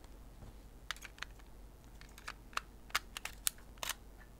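Sharp, light clicks and rattles of an extension tube and kit lens being fitted and twisted onto a Sony E-mount camera body, about eight clicks spread over the second half.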